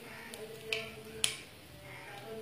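Hot cooking oil in a pan sizzling softly around freshly added asafoetida powder, with two sharp pops about half a second apart near the middle as the oil spits.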